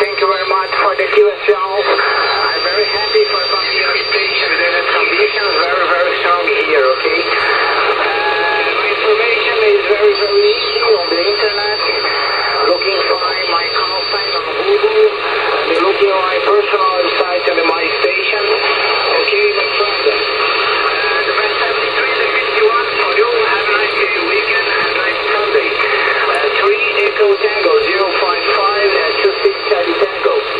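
A distant station's voice received on a shortwave transceiver's speaker in single sideband on the 40-metre band, thin and hard to make out under hiss and static. A high steady whistle of a nearby carrier comes and goes over the voice.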